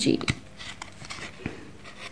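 Thick cardboard board-book pages being turned and handled: a couple of light clicks and a short brushing rustle.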